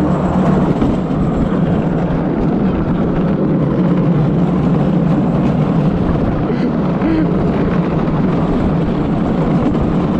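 Gravity luge cart rolling fast down a concrete track: the wheels' steady, loud rumble.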